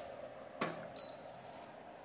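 A click as the power button of a handheld Kaiweets digital multimeter is pressed, followed a moment later by a short high beep as the meter switches on.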